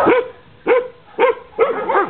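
Dog barking: a series of short barks that rise and fall in pitch, about one every half second, the last one doubled.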